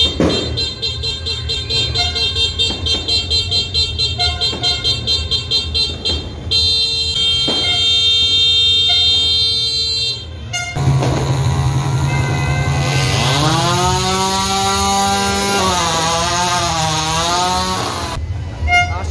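A vehicle horn, most likely a motorcycle's, sounded in quick repeated blasts for about six seconds, then held in one long blast for about four seconds. It is followed by an engine revving, its pitch rising and then swinging up and down.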